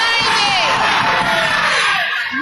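Concert crowd shouting and cheering, many voices calling out at once in answer to the rapper's call to shout out a year.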